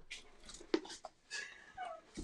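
Faint handling noises of hands working in a cardboard box over paper on a countertop, with one sharp tap about three-quarters of a second in and a brief faint falling tone near the end.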